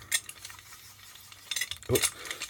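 A small metal bench vice being handled, with light metallic clinks and knocks: a couple near the start and a short cluster about one and a half seconds in.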